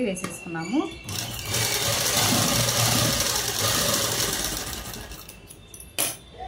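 Ruby sewing machine running steadily as it stitches a dress panel, starting about a second in and winding down near the end.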